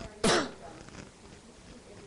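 A person clears their throat with one short, loud cough about a quarter of a second in.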